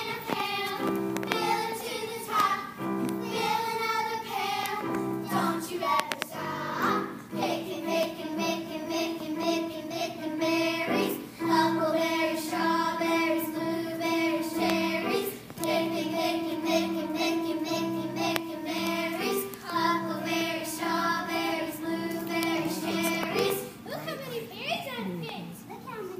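A group of children singing a song with musical accompaniment, the song ending near the end.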